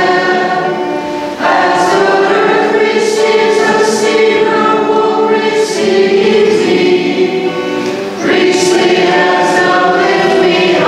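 Choir singing a liturgical hymn in long held phrases, with a short pause about a second and a half in and another near eight seconds.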